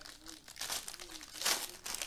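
Foil trading-card pack wrapper crinkling in the hands as it is torn open, a run of crackles that is loudest about one and a half seconds in.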